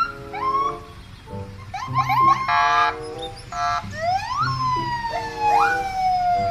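Electronic police car siren sounding a string of quick rising and falling whoops and a few short, steady horn-like blasts, ending on a long falling tone.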